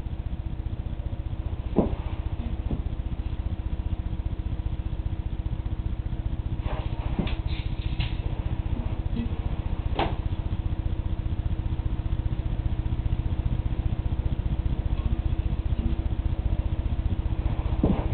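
A steady low background hum with a few scattered light clicks and taps from handling a mousetrap claymore on a pan while it is being set up.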